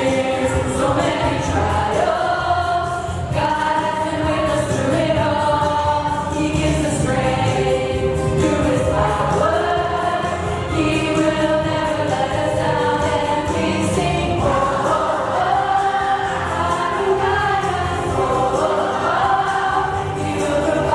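A group of young women singing a Christian worship song together with instrumental accompaniment.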